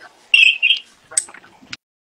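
Two short, high electronic beeps from a phone on speaker, about a quarter second apart: the call cutting off as the other end hangs up. A faint tick follows.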